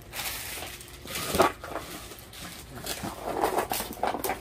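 Clear plastic packaging bags crinkling as they are picked up, with a cardboard box being handled: irregular rustling and crackling.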